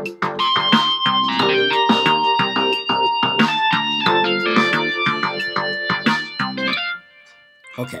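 Soundtrap's 'Mountain Top Lead' virtual rock guitar playing a lead melody of held notes over a backing track with a steady beat, keyed in from a laptop's typing keyboard as it records. The music stops about seven seconds in.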